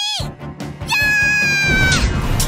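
The tail of a girl's shout, then background music starts. About a second in, a long, high, catlike cry is held for about a second and falls slightly at the end, as a cartoon fight sound effect.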